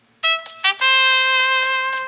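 Trumpet sounding a cartoon elephant's trumpeting call: a few short notes, then one long held note.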